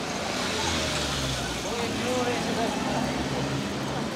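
A small van's engine running with a steady low hum, with people's voices chatting nearby.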